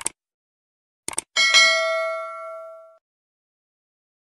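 Subscribe-button sound effect: a short mouse click, then a quick double click about a second in. A bright bell ding follows and rings out over about a second and a half.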